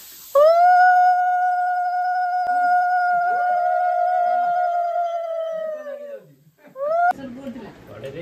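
Conch shell (shankha) blown for puja in one long, steady note of about six seconds that rises at the start and sags at the end. A second blow starts near the end. Fainter voices sound underneath.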